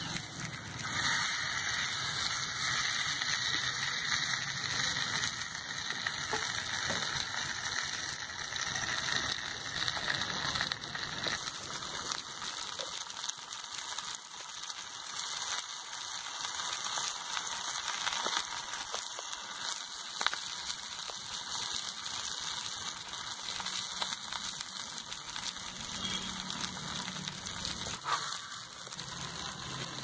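Masala-coated whole fish sizzling in oil on a hot iron tawa, with fine crackles throughout. The sizzle jumps up about a second in as the fish goes onto the pan, then slowly eases off.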